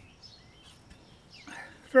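Quiet outdoor ambience with a few faint, short bird chirps, and a soft handling sound about one and a half seconds in as a man begins to speak at the very end.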